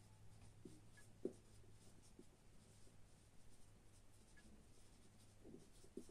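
Faint scratching of a marker writing on a whiteboard, over a low steady hum.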